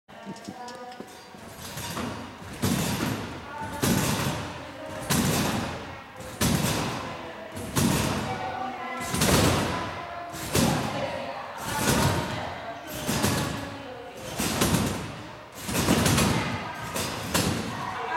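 Trampoline beds and springs taking the landings of rhythmic bouncing: a steady thump with a brief ringing rebound about every 1.3 seconds. The bouncing starts about two and a half seconds in and keeps an even pace through the rest.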